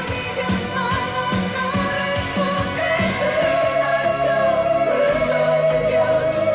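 1980s pop song with a female lead vocal over a steady drum beat; from about three seconds in, a long note is held.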